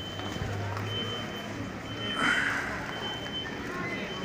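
A high-pitched electronic beep repeating on and off over outdoor street noise, with a low engine hum in the first half and a brief noisy burst about two seconds in.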